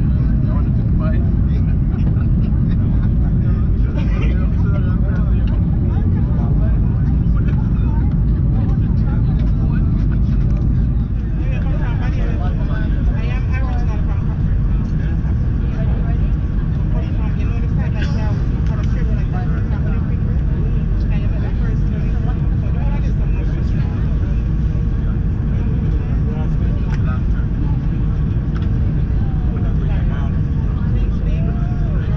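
Airliner cabin noise inside an Airbus A319 descending to land: a steady, loud low rumble of engines and airflow. The level dips slightly about eleven seconds in.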